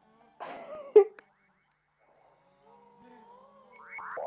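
Electronic sound effect on an old TV-film soundtrack, marking a man turning invisible with a magic ring: a short noisy burst ending in a sharp pop about a second in, then after a pause faint wavering synthesizer tones that swell and glide upward near the end.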